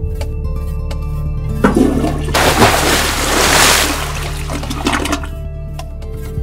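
Rushing-water sound effect like a flush, swelling about a second and a half in and fading out around the five-second mark, over steady background music.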